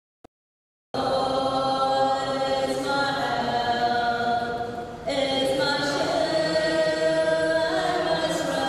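A woman singing a hymn into a microphone in long held notes, with a short breath break about five seconds in. The sound drops out completely for the first second.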